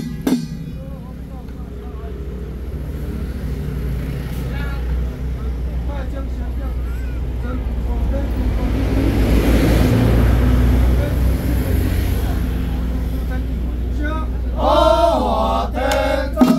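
A low, droning blast on a ritual horn, growing louder to a peak about two-thirds of the way through. Near the end, male chanting resumes.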